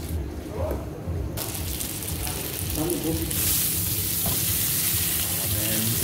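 Chicken breast fillets frying in hot oil in a nonstick pan: a steady sizzle that starts suddenly about a second in and grows louder about halfway through.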